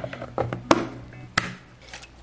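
A few sharp plastic clicks and knocks, one stronger than the rest a little under a second in, as the clear plastic top of a two-compartment nail soak-off bowl is pressed back into place over its hot-water compartment.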